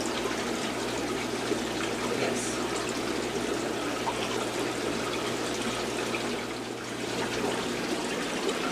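Steady trickling and splashing of running water from a fish store's aquarium filters and overflows, over a low steady hum.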